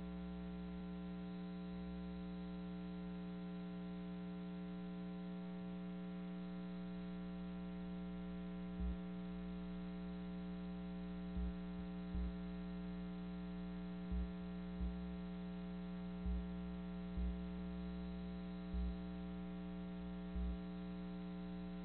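Steady electrical mains hum with a stack of buzzing overtones, on a broadcast capture whose programme feed has dropped out. From about nine seconds in, eight short low thumps come every second or two.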